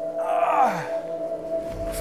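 A man's voiced sigh that falls in pitch, lasting under a second, as he stretches. It sits over a steady background music drone.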